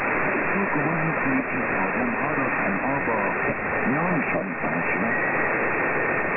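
Weak medium-wave broadcast on 783 kHz, tentatively identified as an Iranian station, received in lower sideband through a narrow filter. A faint voice speaking Persian comes through a steady hiss of static, with a thin steady whistle that is plainer in the second half.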